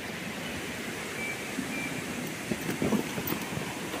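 Steady rush of river water running, with a couple of faint short high chirps in the first half and a few soft low knocks near the end.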